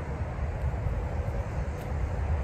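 Steady low outdoor rumble, with no distinct sound standing out.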